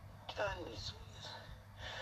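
A woman's voice, quiet: a short murmured phrase with falling pitch about a third of a second in, then an audible breath near the end.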